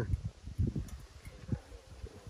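Wind buffeting the microphone in irregular low rumbling bursts, with a faint steady hum coming in about halfway through.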